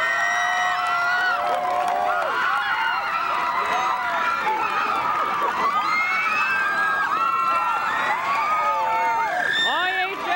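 A group of teenage girls screaming and cheering together in celebration of a win, many high voices shouting over one another without a break.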